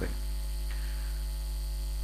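Steady low electrical hum, mains hum with its overtones.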